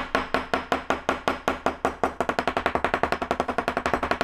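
Edge of a steel kitchen knife tapped rapidly and repeatedly against a hickory block, the knocks quickening about halfway through, to fold over the burr on the edge.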